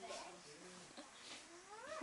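Baby's soft babbling vocal sounds, with one call rising sharply in pitch near the end.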